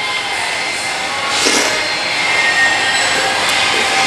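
A steady, loud rushing noise with a short, louder burst of noise about one and a half seconds in.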